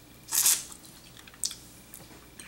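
A wet slurp as the soft pulp of a kousa dogwood fruit is sucked out at the lips, then a short mouth smack about a second later.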